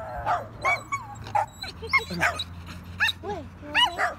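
A white dog's rapid, high-pitched yipping barks, about two or three a second, each call bending up and down in pitch. The voice sounds cracked and odd, what the owners call a voice defect: "his voice is broken."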